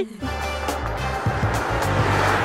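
Background music over a car driving past on the road, its engine and tyre noise swelling toward the end.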